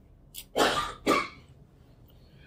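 A man coughing twice in quick succession, preceded by a faint click.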